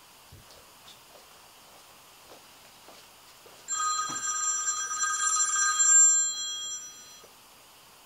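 A smartphone ringing with an incoming call: a steady ring of several tones at once, starting about four seconds in and lasting about three seconds before it stops.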